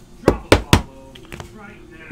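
Three quick, sharp knocks of a rigid plastic top loader tapped against the tabletop within about half a second, as a trading card is seated in it.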